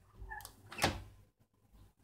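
Metal lever handle of an interior door pressed down, a faint rattle and then one sharp click of the latch releasing a little under a second in.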